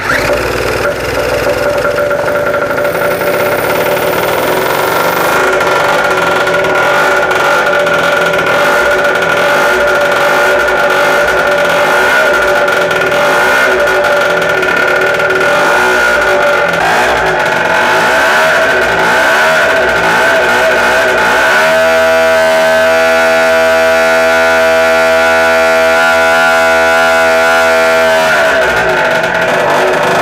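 Small two-stroke engine with an expansion-chamber exhaust running on a home-built dyno, on its first mechanical test run, with its clutch grabbing almost at idle. It starts abruptly and runs loud and steady, shifts to a different steady note about two-thirds of the way through, then falls and rises again near the end.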